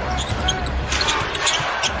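A basketball being dribbled on a hardwood court, with a few bounces over steady arena crowd noise.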